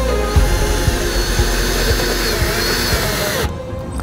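Cordless drill-driver running as it drives a fixing screw down through an aluminium eaves beam, with faint wavering tones in the noise; it stops about three and a half seconds in. Background music plays under it.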